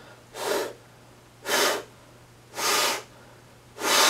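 A person breathing hard and fast inside a full-face airsoft helmet and cloth mask, four forceful breaths about a second apart, to fog up the helmet's lenses.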